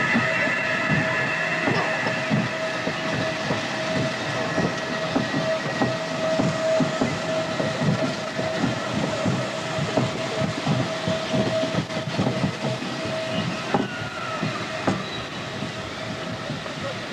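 Roller-coaster train running along its steel track: a dense, continuous clatter of wheels, with a steady whine that stops about two and a half seconds before the end.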